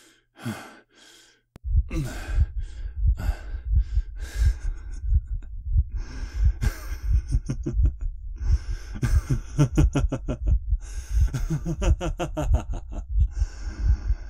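A man breathing heavily close to the microphone, with gasps and sighs. A deep pulsing rumble comes in underneath about a second and a half in and keeps going.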